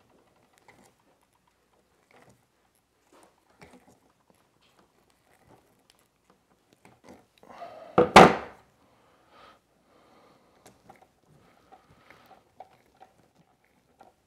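Faint small clicks and rustles of electrical wires being handled in a plastic junction box. Then, a little past halfway, a single loud thunk as a pair of pliers is set down on the wooden table.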